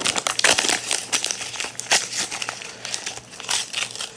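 A folded sheet of white paper being handled and unfolded by hand: a busy run of irregular crinkles and crackles.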